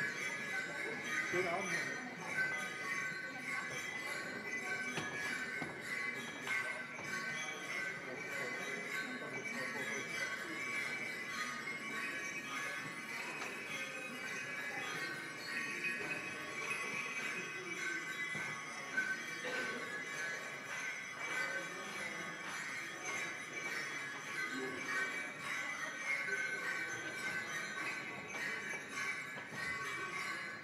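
Percussion improvisation of layered metallic ringing that holds steady throughout, with light jingling and scattered soft strikes beneath it.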